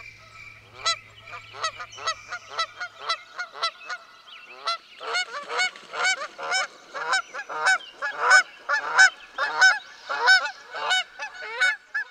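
A flock of geese honking in a rapid run of calls, growing thicker and louder from about five seconds in, over a faint low hum that stops about three seconds in.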